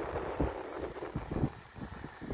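Wind rumbling on the microphone in low gusts, with a few soft thumps in the first half.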